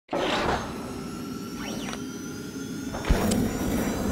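Animated logo sting: electronic whooshing sweeps over held synth tones, with a sharp low hit about three seconds in.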